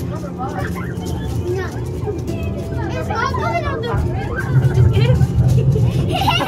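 Steady low rumble of a farm-park ride train moving along, with passengers' voices talking over it.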